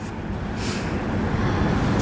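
A pause in speech filled with steady, rumbling background noise, with a short hiss about half a second in.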